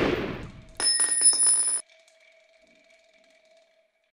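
The tail of a gunshot blast fading out, then a spent brass cartridge casing landing and clinking rapidly several times on a hard surface about a second in. Its high metallic ring dies away over the next two seconds.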